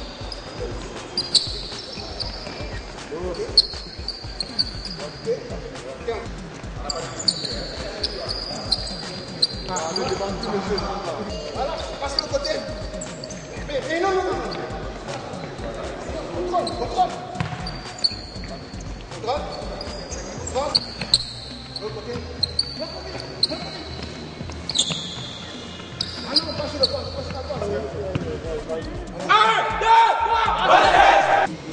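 Basketballs bouncing on an indoor hardwood court with short high sneaker squeaks and scattered voices, and a loud burst of voices near the end.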